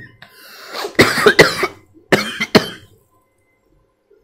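A man coughing into his hand: a breath drawn in, then four coughs in two quick pairs about a second apart.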